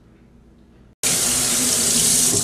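Faint room tone, then about a second in a kitchen faucet running steadily into the sink, starting abruptly.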